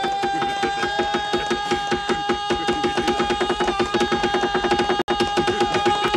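A knife point rapidly stabbing a tabletop between spread fingers, a fast train of sharp knocks that speeds up, over a steady held tone that rises slightly in pitch.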